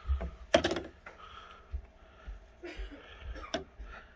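Quiet handling noise: a few scattered soft clicks and knocks, the sharpest about half a second in, over low rumbles as the cord and camera are moved by hand.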